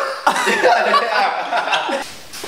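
Several young men laughing and shouting over one another.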